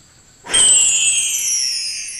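A shimmering chime sound effect that starts suddenly about half a second in, its high tones gliding slowly downward as it fades.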